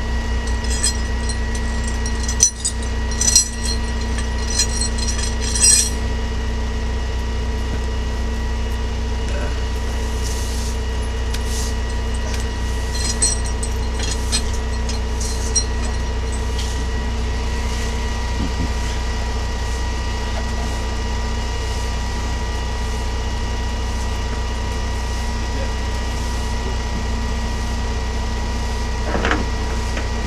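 A vehicle engine idling steadily, a constant low hum with a few steady tones over it. Light metallic clinks and rattles come in the first few seconds and again about halfway through.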